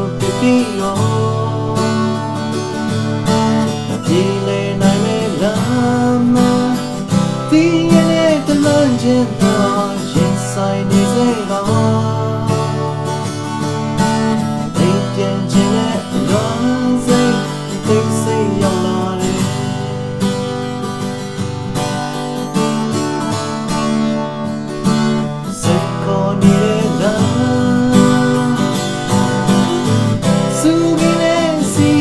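Acoustic guitar strummed continuously in a steady rhythm through a chord progression, with a man's singing voice carrying a melody over it.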